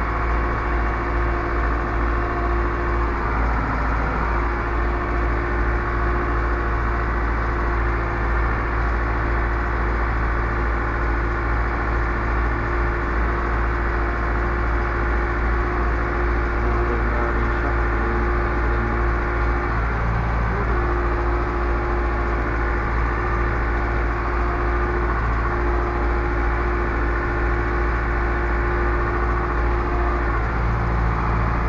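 Zetor Proxima 65 tractor's diesel engine running steadily at a constant speed, with a deep hum and a steady tone above it.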